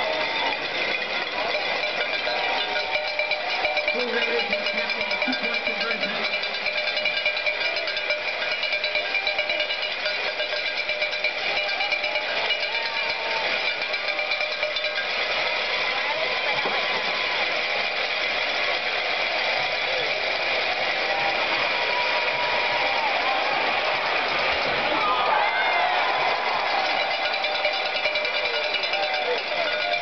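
Many Mississippi State fans' cowbells clanging continuously in a stadium crowd, a dense steady ringing with crowd voices and shouts mixed in. It swells slightly about 25 seconds in.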